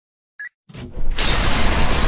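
Intro sound effects: a short, sharp metallic click and a second fainter click, then about a second in a loud explosion effect with shattering glass that keeps going.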